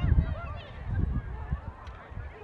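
Scattered distant shouts from players and spectators across an outdoor lacrosse field: short rising-and-falling calls, quieter than the shouting just before, over a low rumble of wind on the microphone.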